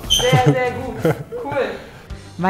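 Men's voices laughing and speaking briefly, loudest in the first second.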